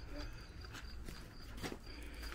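Faint handling noise from a hand-held camera being moved about: a low rumble with a few light taps.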